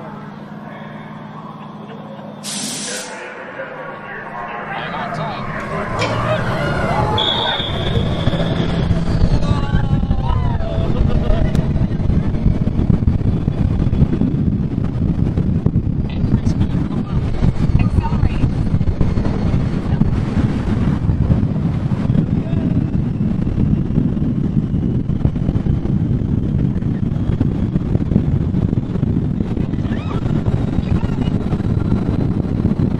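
Test Track ride vehicle speeding up onto the high-speed outdoor run. Wind and road rush build over the first six seconds to a loud, steady roar. A short hiss comes about two and a half seconds in, and riders' voices shout for a few seconds soon after.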